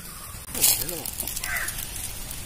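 A crow cawing, with a brief scratchy noise about half a second in and faint voices.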